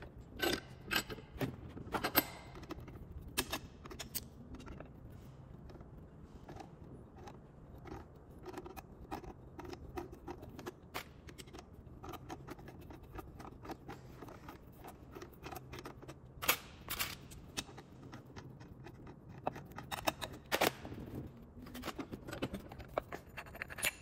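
Channel-lock pliers working a threadlocked down-rod coupler off a ceiling fan motor's threaded shaft: irregular metallic clicks, ticks and scrapes as the jaws grip, slip and are reset. The clicks come thickest in the first few seconds and again in short runs late on.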